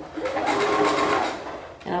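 Brother CS5055PRW sewing machine running a short burst of stitching for about a second and a half. The sound eases off near the end as the machine slows.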